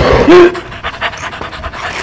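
Handheld gas torch hissing as its flame plays on lump charcoal in a metal grill, stopping suddenly about half a second in; faint scattered clicks follow.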